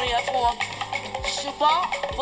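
Live gospel music from a concert recording: a woman's voice singing over a band, with drum beats.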